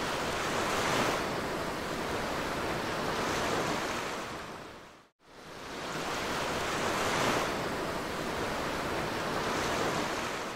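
Ocean surf, a steady wash of waves that swells and eases twice, cuts out briefly about five seconds in, then starts again and swells twice more in the same pattern.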